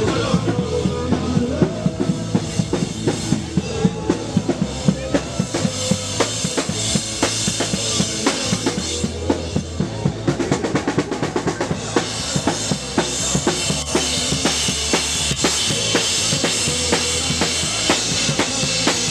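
Live revolutionary folk band playing an instrumental stretch: a steady drum beat with bass guitar underneath. The music fills out about twelve seconds in.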